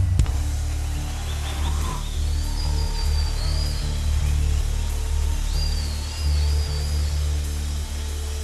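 Live worship band music: low bass and keyboard notes held and shifting every second or so, with no singing.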